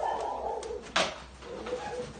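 Low, drawn-out cooing calls from an animal, with a sharp click about a second in.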